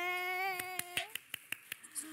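A voice holds one steady drawn-out note for about a second. Partway through, a run of sharp, uneven hand claps starts, about eight in all, and goes on to near the end.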